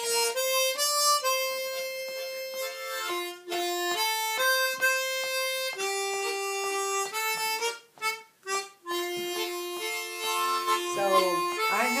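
Harmonica played solo: a slow melody of held single notes, with brief breaks between phrases.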